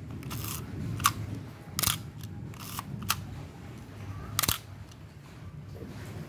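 Nikon FE2 35 mm SLR body being test-fired: about four sharp clacks of the shutter and mirror releasing, with the longer ratcheting stroke of the film-advance lever cocking it between shots.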